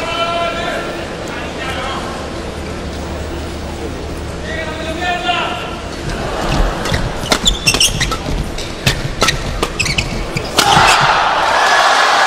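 A fast doubles badminton rally: a quick series of sharp racket strikes on the shuttlecock. About ten and a half seconds in, it gives way to crowd cheering and applause as the point ends.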